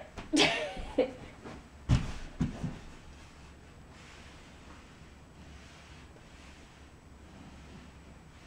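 A brief vocal sound in the first second from a woman who has just kicked up into a handstand against a wall, then two dull thumps about two seconds in, then faint steady room tone while she holds the handstand.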